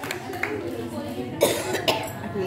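Voices of people talking in a room, with two sharp coughs close together near the end.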